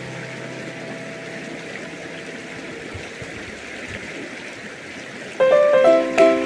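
Shallow stream rushing steadily over stones. Background music fades out at the start, and plucked, ukulele-like music cuts in suddenly near the end.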